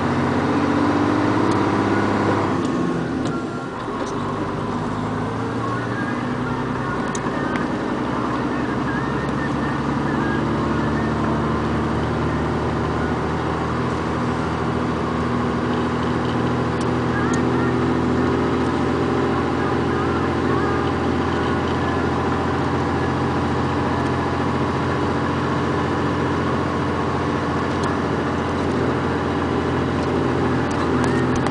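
Road vehicle engine running while driving, heard from inside the moving vehicle. The engine note dips briefly about three seconds in, then holds a steady pitch.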